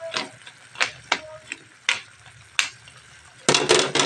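A cooking utensil knocking against a pot while yardlong beans are stirred in, separate sharp clicks every half second or so, then a burst of louder clattering near the end.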